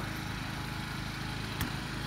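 A small engine running steadily, with one sharp knock about one and a half seconds in.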